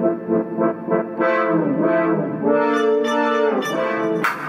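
Synthesizer playing held, brass-like chords, the pitch sliding down and back up between them.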